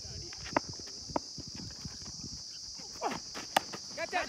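Cricket bat striking a weighted tennis ball with a sharp knock about three and a half seconds in, after a couple of fainter knocks earlier. A steady high-pitched insect chorus runs underneath throughout.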